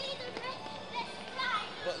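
Background chatter of a crowd, with children's voices talking and calling over one another.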